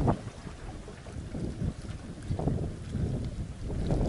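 Wind buffeting the microphone in uneven gusts, with the sea washing against the breakwater rocks underneath.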